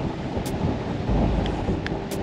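Strong wind, about 30 mile an hour, buffeting the microphone as a steady low rumble, with two brief faint clicks, one about half a second in and one near the end.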